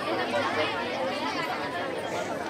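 Many voices talking at once, a steady hubbub of chatter with no one voice standing out.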